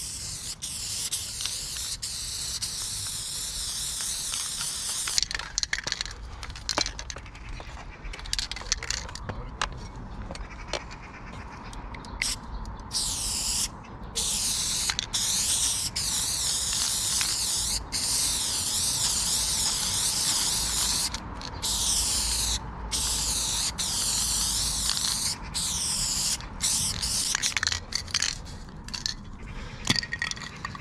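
Aerosol spray-paint can hissing as paint is sprayed onto a concrete wall. A long steady spray comes first, then a string of short spurts, then sprays of a second or two with brief breaks between them.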